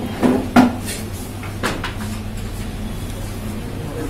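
Two sharp knocks about a quarter of a second apart near the start and a softer one a second later, over a steady low hum.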